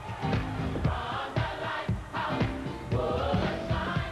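Gospel choir singing in full chorus over a band, with a steady heavy beat about twice a second.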